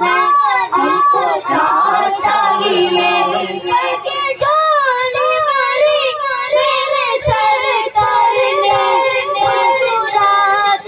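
A boy's voice reciting a naat unaccompanied into a microphone, with long held notes bent in repeated arching, ornamented runs.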